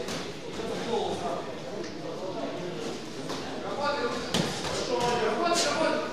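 Amateur boxing bout heard from ringside: voices calling out over the knocks of gloves and the boxers' footwork on the ring canvas. A sharp knock about four and a half seconds in is the loudest moment.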